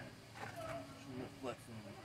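Speech only: a man says a few short words, fairly quiet, over faint outdoor background.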